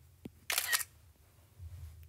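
iPad screenshot shutter sound: a short synthetic camera-shutter click about half a second in, with a faint tap just before it.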